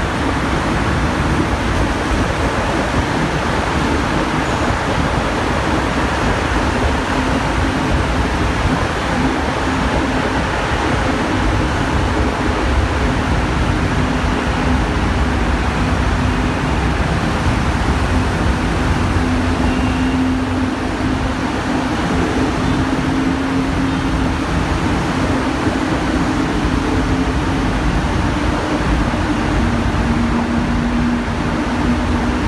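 Steady traffic noise inside a road tunnel: car and motorbike engines running and tyres on the road in slow traffic, with a steady low engine drone throughout.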